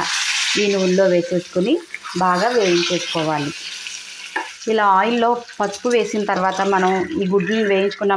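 Hot oil sizzling as peeled boiled eggs are laid into the pan to fry. The sizzle is strongest just as the first egg goes in and dies down over the next few seconds. A woman's voice talks over it.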